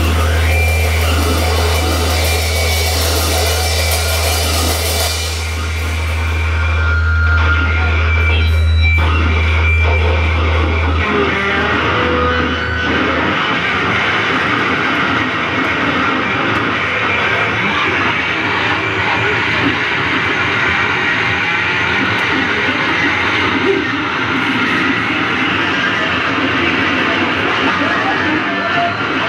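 Raw punk noise band playing live: a loud, dense wall of distorted bass and synthesizer noise, with a deep steady drone underneath that drops out about eleven seconds in.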